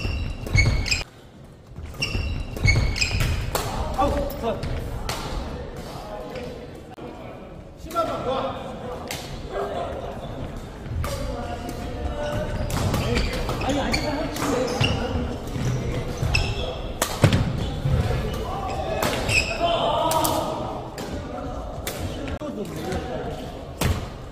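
Badminton doubles rally on an indoor hardwood court: irregular sharp racket strikes on the shuttlecock and players' footfalls on the floor, over a background of voices in the echoing hall.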